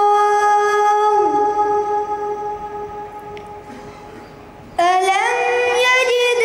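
A boy's voice in melodic Quran recitation (tilawat) through a microphone: one long held note drops in pitch about a second in and fades away, then a new phrase begins near the end, sliding upward in pitch.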